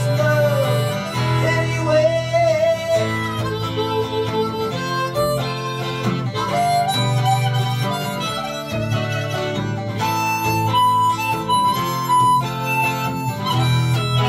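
Harmonica solo over a strummed Taylor acoustic guitar. The harmonica carries the melody with long held notes, backed by steady chord strumming.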